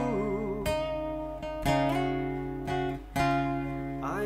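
Acoustic guitar strummed in an instrumental passage of a slow ballad: ringing chords, with three hard strums at about two-thirds of a second in, about a second and a half in, and about three seconds in, each left to sustain.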